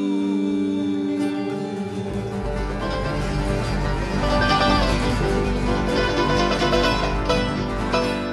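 Live acoustic band playing: strummed acoustic guitars, mandolin and upright bass. A held chord rings through the first two seconds, then the upright bass comes in and the band plays on busily.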